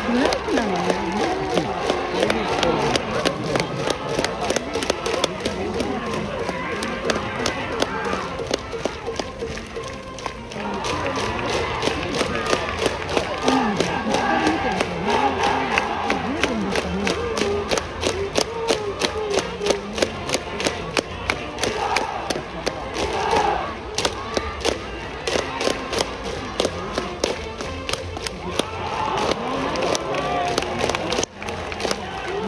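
Cheering section in the stands: many voices chanting in unison over music with a steady, fast drumbeat. There is a brief lull about a third of the way in.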